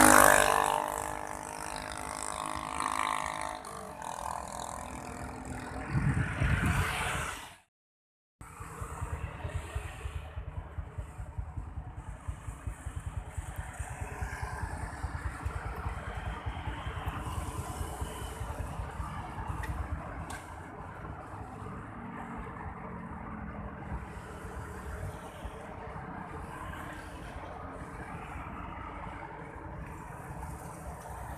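Road traffic: a vehicle passes close by at the start, its engine sound fading over a few seconds, and another swells up around six seconds in. After a brief dropout, a steady low rumble of traffic with gusty wind buffeting the microphone.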